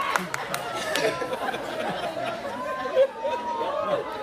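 Several voices talking over one another.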